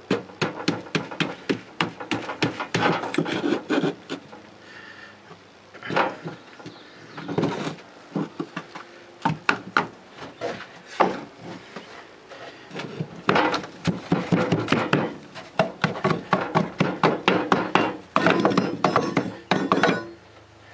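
Wooden molding flask knocked and rattled against the wooden slats of a shakeout tub to break a fresh casting out of its sand mold: bursts of rapid wooden knocks with scraping and loose sand falling, in several spells separated by short pauses.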